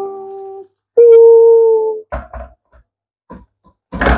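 A voice holding two long, steady notes like a drawn-out hum, the second one higher, followed by a few short soft sounds.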